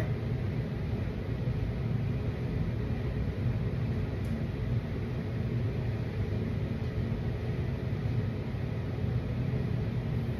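Steady low hum of room background noise, even throughout, with no distinct events.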